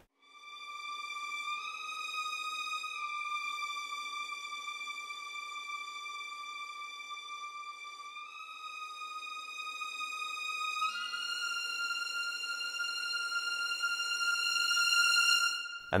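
Sampled first-violin section from Audio Imperia's AREIA legato strings library, played back solo: a slow, high legato line of long held notes that steps up and down in pitch a few times and swells louder toward the end. The swell is shaped by drawn MIDI CC curves for dynamics and vibrato.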